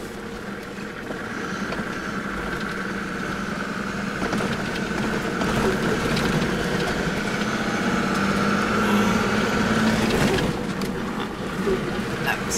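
Toyota Land Cruiser 60 Series driving slowly over a rough dirt track, heard from inside the cab: a steady engine drone and tyre-and-road rumble with a higher whine, growing louder through the middle and easing slightly near the end.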